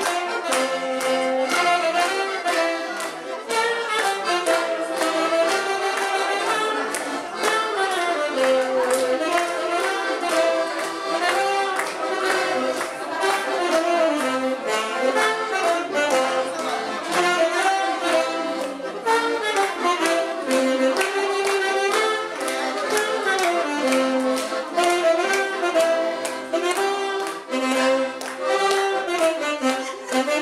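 Live dance music on accordion and saxophone, with a steady beat and a moving melody.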